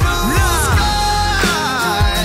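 Hip-hop/pop song playing between sung lines: a steady beat of deep kick drums that drop in pitch, under bending, sliding melodic notes.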